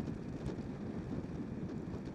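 Steady low rumble of wind and road noise, with no distinct events.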